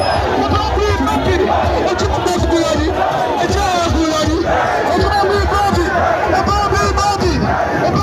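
A large crowd of many voices calling out at once, loud and continuous.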